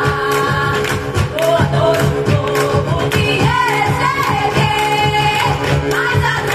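A vocal ensemble singing through a PA system over music with a steady beat, several voices together with a melody line gliding up and down.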